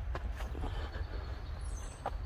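Steady low rumble of distant road traffic, with a few soft footfalls on a dirt trail.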